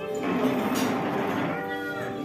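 Background music with steady held notes, and over it a loud, whiny, meow-like vocal sound lasting about a second, most likely a young child whining.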